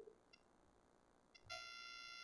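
Near silence, then about one and a half seconds in a faint, steady electronic beep-like tone with a stack of overtones starts and holds: a sound effect at a slide transition.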